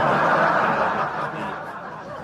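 A man laughing in a breathy snicker, loudest in the first second and fading.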